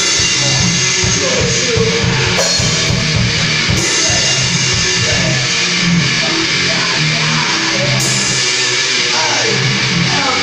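Loud live rock played on guitar and drum kit, with rapid kick-drum beats through the first half that thin out after about six seconds.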